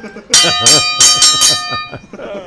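A bell struck rapidly about five or six times, its tone ringing on and fading near the end.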